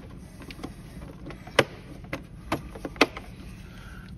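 Metal compression-tester adapters and fittings clicking against each other and the plastic kit case as they are handled. Several sharp clicks come at uneven intervals, the loudest in the second half.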